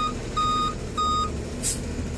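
Tow truck's backup alarm beeping evenly, a little under twice a second, three beeps that stop about a second and a quarter in, over the truck's running engine.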